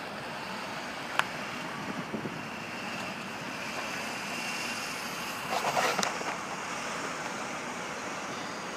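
2007 Ford Taurus SE creeping forward at low speed with its engine running, heard as a steady low noise. There is a sharp click about a second in and a brief louder scuffing noise around six seconds in.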